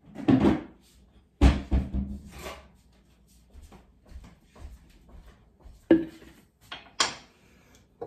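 Knocks and clatters of kitchen cupboards and a plastic pitcher being handled. A cluster of knocks comes in the first two and a half seconds, then two sharp ones near the end.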